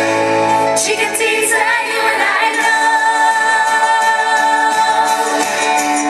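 A woman singing a cover song live into a microphone over backing music, holding one long note from about two and a half seconds in.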